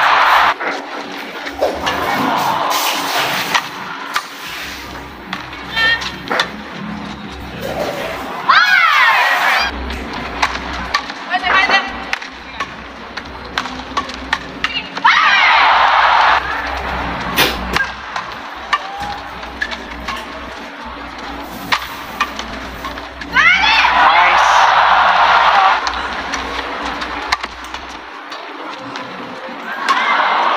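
Badminton rallies in an indoor arena: sharp racket hits on the shuttlecock under steady crowd noise, broken four times by loud shouts and cheering as points are won.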